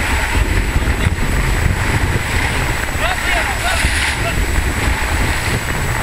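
Wind buffeting the microphone on a sailboat under way at sea: a steady, loud low rumble. Faint distant voices come in about three seconds in.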